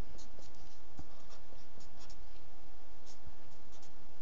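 Marker pen scratching on paper in short, quick strokes as a formula is written, over a steady background hiss.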